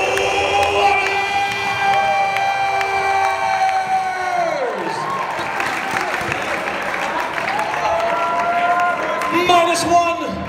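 Audience cheering and applauding. Over it, one long held high note slides steeply down in pitch about four and a half seconds in, and a second, shorter held note comes near the end.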